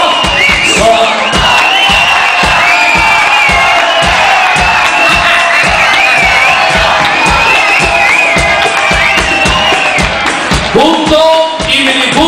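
Loud live dance music from a party orchestra over a PA system, with a steady drum beat and a high, wavering lead melody. It changes near the end. A large crowd is cheering under it.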